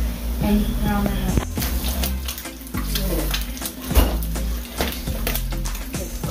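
Background music with a steady bass line and a singing voice.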